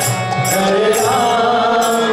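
Devotional kirtan: a lead voice chanting over a harmonium's sustained reedy chords, with a mridanga drum and small hand cymbals (kartals) clashing about twice a second.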